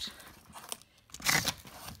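Cardboard box flaps being pulled open by hand: faint clicks, then a short, loud scraping rustle of cardboard a little past a second in.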